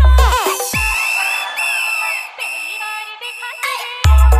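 Hindi DJ dance remix music: a heavy bass beat with falling synth sweeps cuts out about a second in. A quieter breakdown of high held synth tones follows, with no bass, until the beat drops back in at the very end.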